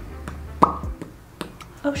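A single short pop with a brief pitched ring about half a second in, with a lighter click later, followed by a woman's "Oh" near the end.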